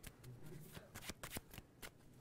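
A deck of playing cards being handled and shuffled in the hands: faint, sharp card clicks and snaps at irregular moments.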